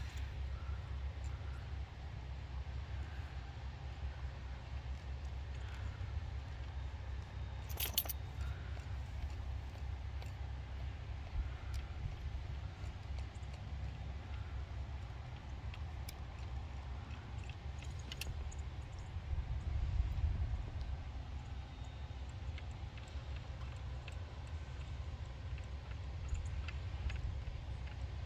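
Steady low rumble of wind on the microphone, with a few sharp clicks from a manual caulking gun's trigger and plunger as sealant is squeezed along an RV window seam, the clearest click about eight seconds in.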